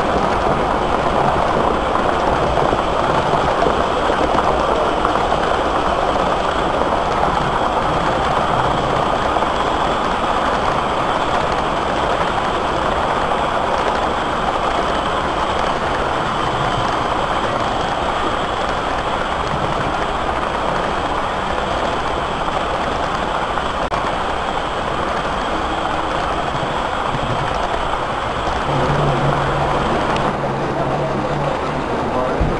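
Model trains running on the layout's track close by, a steady noise of wheels and motors. A low steady hum comes in near the end.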